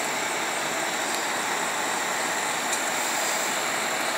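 Fire trucks' engines running steadily, an even, unchanging mechanical noise.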